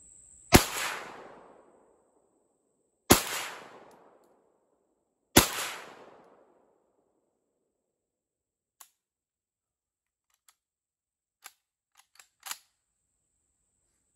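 Three rifle shots from an Auto Ordnance M1 Carbine in .30 Carbine, about two and a half seconds apart, each trailing off over about a second. A few faint clicks follow near the end.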